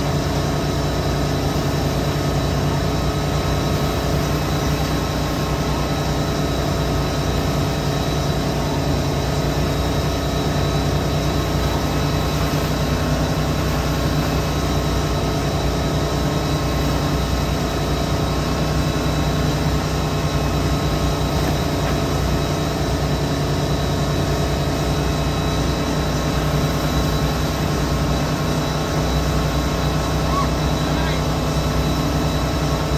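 A wake-surf tow boat's inboard engine running at a steady speed, one constant drone with no change in pitch, over the rush of water from the boat's wake.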